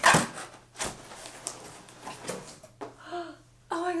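A large cardboard shipping box being pulled open by hand: a loud tearing scrape of cardboard and tape at the very start, then a few shorter knocks and rustles of the flaps. A woman's voice comes in briefly near the end.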